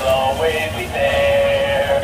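A Care Bears singing plush toy playing its recorded song through its small speaker: sung, electronic-sounding notes over music.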